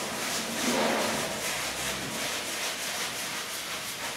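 Wad of cheesecloth rubbing and dabbing glaze across a painted wall in repeated strokes.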